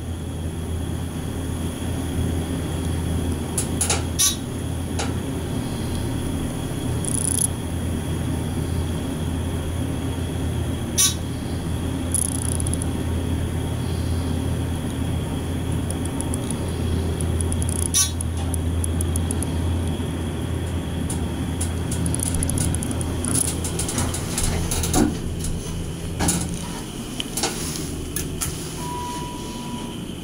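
Dover hydraulic elevator car descending, with a steady low hum through the ride and a few faint clicks. The hum dies down near the end as the car slows and stops, followed by a short beep.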